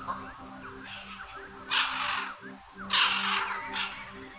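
Birds chirping, with two loud, harsh calls about two and three seconds in, over soft background music holding steady low notes.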